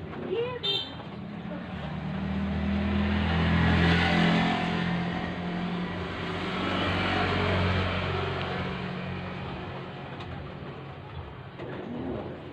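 A road vehicle's engine passing close by. The sound swells to a peak about four seconds in, swells again around seven to eight seconds, then fades.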